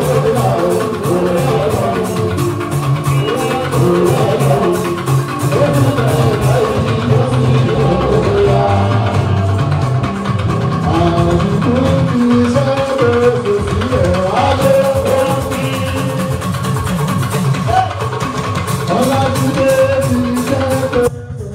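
A man singing live into a microphone over a fuji band, with drums and even, rhythmic percussion.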